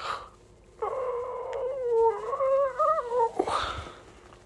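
A drawn-out, wavering howl lasting about two and a half seconds, climbing in pitch near its end, with a short breathy rush just before and just after it.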